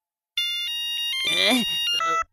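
A mobile phone's electronic ringtone: a melody of stepped, beeping tones that starts about a third of a second in. A voice talks over it from about halfway through.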